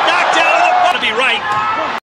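Boxing arena crowd shouting and cheering, many voices over each other; the sound cuts off suddenly at the end.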